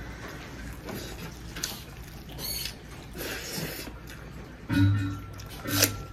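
Close-miked eating sounds of a rice meal eaten by hand: wet mouth clicks and chewing smacks, with scattered short crackles. Near the end come two short, louder low hums.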